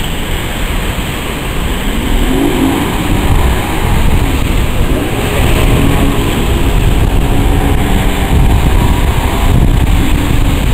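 Outboard motors on a cabin boat running under throttle, their pitch rising and falling as the boat powers through breaking surf on a river bar crossing. Beneath them a steady rush of surf and wind buffeting the microphone, growing a little louder about two seconds in.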